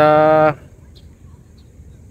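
A man's voice holding a flat, drawn-out "ahh" hesitation for about half a second, then only low background noise.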